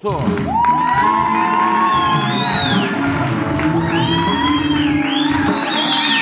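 Live studio band playing an upbeat music cue with electric guitar, over a studio audience cheering, whooping and clapping.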